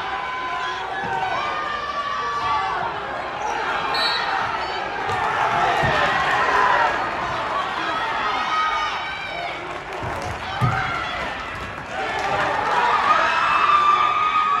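Many spectators and coaches shouting at once in a gym, yelling at the wrestlers as a near fall is worked for. There are a couple of dull thumps, about six and eleven seconds in.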